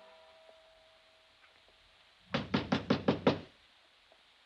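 Knocking on a wooden door, a quick run of about six knocks starting a little over two seconds in: a radio-drama sound effect of a caller at the front door.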